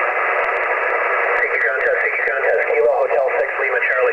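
Single-sideband voice reception on the 10-metre band from a Yaesu transceiver's speaker, thin and band-limited with a steady static hiss. From about a second and a half in, a distorted, hard-to-follow voice comes through the noise.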